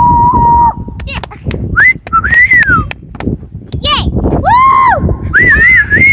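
Someone whistling a wavering, sliding tune in high notes, held then swooping up and down. Sharp knocks of a basketball bouncing on asphalt are heard among the notes.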